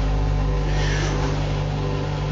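A steady low mechanical hum with a faint hiss over it, even throughout.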